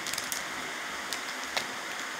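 Foil trading-card pack wrapper rustling softly as the cards are slid out of it, with a few faint small ticks.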